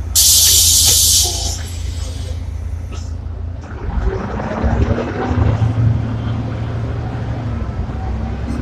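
Ikarus 435 city bus's compressed-air system letting out a loud hiss for about a second, over the diesel engine's low rumble. About four seconds in, the engine rumble grows louder.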